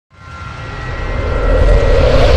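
Cinematic intro sound effect: a low rumbling swell that fades in from silence and builds steadily in loudness, with faint steady high tones above it.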